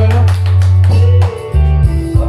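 Instrumental music with strummed guitar over a deep, sustained bass line, with no singing; the bass shifts to a lower note about three-quarters of the way through.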